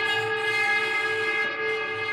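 Archtop guitar bowed with a cello bow: a steady, sustained drone of several pitches sounding at once, the lowest note held strongly throughout.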